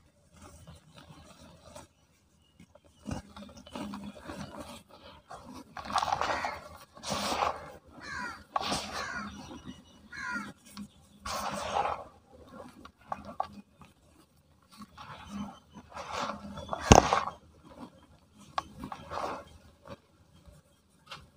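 Dry, dusty cement chunks crushed and crumbled by hand, the crumbs and powder pouring back onto a loose pile in irregular crunchy bursts. The loudest moment is a sharp crack about 17 seconds in.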